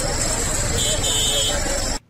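Street ambience of a crowd talking over a vehicle engine running, with a steady low rumble and hiss throughout. It cuts off abruptly at the end.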